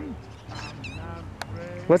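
A man's voice calling to a cat in a high sing-song: the end of one word at the start and the beginning of the next near the end. Between them, a quiet stretch with a few faint high chirps and a single short click.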